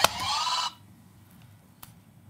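Short electronic game-show sound effect: a click, then a rising tone with a swish over it lasting under a second, marking the start of the answer countdown. After it, quiet room tone with a faint click near the end.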